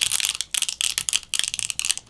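Stretch-release adhesive pull tab being peeled out from under a Redmi K20 Pro's battery: a rapid, dry crackle of the tape releasing, with a couple of brief pauses.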